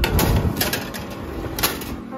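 Metal baking tray sliding onto a wire oven rack: a scraping metal rattle with a few sharp clanks, loudest at the start.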